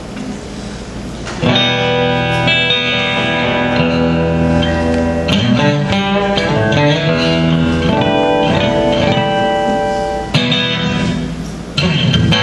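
Acoustic guitar playing ringing chords, starting about a second and a half in, breaking off briefly near the end and then starting again.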